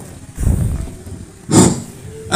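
Handling noise on a phone's microphone: a low rumble about half a second in, then a sudden loud bump about a second and a half in.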